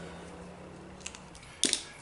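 Hand tools being handled on a bench: a few small clicks, then one sharper click about a second and a half in, over a faint steady low hum.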